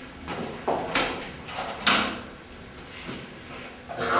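A toilet cubicle door being opened: a series of handle, latch and door clicks and knocks over the first two seconds, the sharpest nearly two seconds in.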